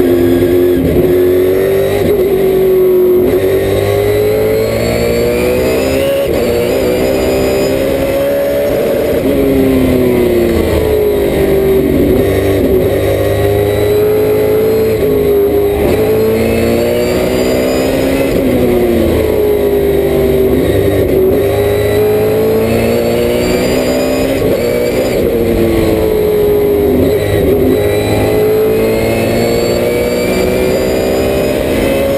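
Trans Am race car's V8 engine heard from inside the cockpit at racing speed. Its note climbs under acceleration and drops back as the driver lifts and downshifts for corners, several times over, with steady wind and road noise underneath.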